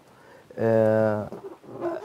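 A man's voice holding one long, level 'aah' for under a second, a drawn-out hesitation in the middle of a sentence.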